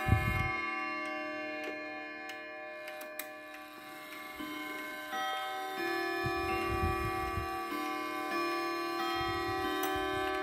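Hermle triple-chime wall clock playing a chime melody on its chime rods, a new note struck about every second and each note ringing on under the next, with the clock ticking faintly beneath. Low handling bumps come near the start and again in the second half.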